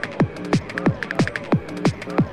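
Fast tekno dance music from a DJ mix: a deep kick drum that drops in pitch on each hit, about three beats a second, over hi-hat ticks.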